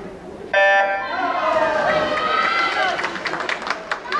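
Electronic start signal of a swim race: one short, loud buzzing beep about half a second in. Spectators' shouts and cheers follow as the swimmers dive in.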